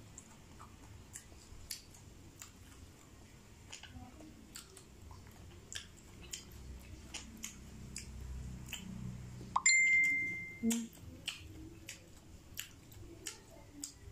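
Close-up chewing of pomelo segments: many small, sharp mouth clicks. About ten seconds in comes one loud, clear ding that rings for about half a second and fades.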